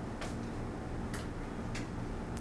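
Three short, sharp clicks, under a second apart, over a steady low hum.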